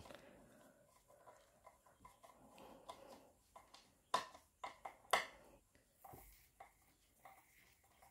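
Faint clicks and small creaks of a hand screwdriver driving a long screw into a toy playset's board, with a couple of sharper clicks about four and five seconds in.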